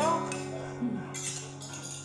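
Light clinks of cutlery against dishes, a few short knocks, over steady background music.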